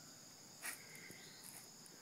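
Faint, steady high-pitched insect chorus, with one brief noisy burst about two-thirds of a second in.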